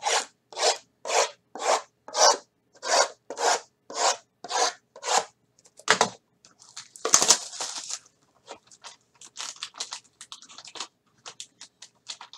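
A run of about eleven even rasping strokes, roughly two a second, then louder rustling and cardboard handling from about six seconds in, thinning to scattered light clicks as a card box is opened.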